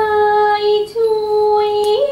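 Thai classical music accompanying the dance: a high female-sounding voice holding two long, steady notes, each about a second, with a small slide in pitch as each one ends.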